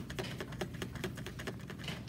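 Paintbrush being scrubbed in a magenta tempera paint cake to load it with paint: a quick, uneven run of light clicks and scratches.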